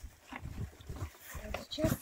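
Low, indistinct voices in short fragments, over faint handling noise from the plastic-wrapped machine being shifted in its cardboard box.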